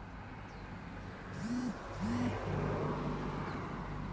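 A motor vehicle's engine revving up and back down twice in quick succession, then running steadily.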